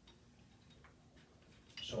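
Quiet room with a few faint, irregular ticks, then a man's voice near the end.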